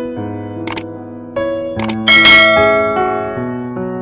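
Soft keyboard background music under a subscribe-button animation's sound effects: two quick clicks about a second apart, then a bright bell-like chime, the loudest sound, that rings and fades.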